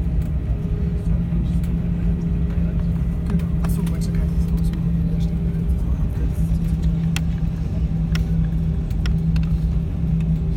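An airliner's jet engines running at taxi power, heard from inside the cabin: a steady low rumble with a constant hum, and a few faint clicks and rattles.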